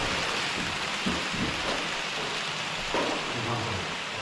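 HO-scale model Shinkansen train running past on the elevated track close by: a steady rushing noise from its wheels and motor on the track.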